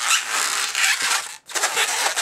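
Inflated 260 latex modelling balloon squeaking and rubbing against the hands as it is gripped and twisted into a bubble. The squeaking breaks off briefly about a second and a half in, then starts again.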